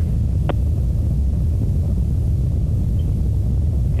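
Atlas V rocket in powered ascent, its RD-180 main engine and two solid rocket boosters burning, heard as a steady deep rumble. A single short click comes about half a second in.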